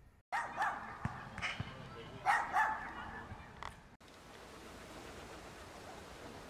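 A dog barking about six times in quick, uneven bursts, followed by an abrupt cut to a steady outdoor hiss.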